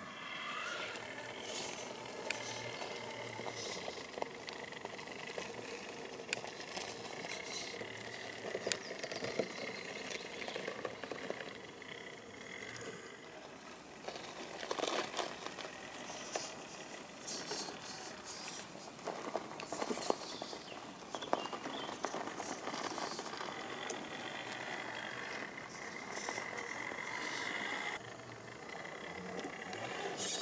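RC rock crawler running on its brushed electric motor: a gear-drivetrain whine that comes and goes with the throttle, with grit and small stones crackling under its Pro-Line Hyrax tyres as it crawls over sand and rock.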